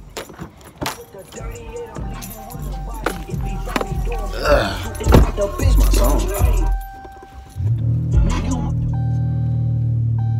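Car keys jangling with clicks and rattles, then about eight seconds in the car's engine catches and settles into a steady idle after repeated failed starts on a nearly empty tank.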